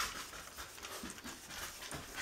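Litter of four-week-old schnauzer puppies eating their first solid food from steel bowls: quick, overlapping lapping, chewing and smacking.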